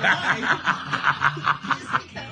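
A man laughing hard: a quick run of short laugh pulses, about five a second.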